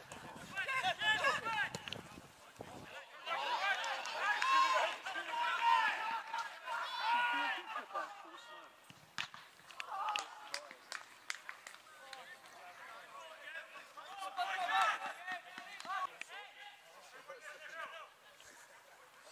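Shouting voices of footballers and onlookers carrying across an open pitch in several bursts, with a few short sharp knocks in the middle.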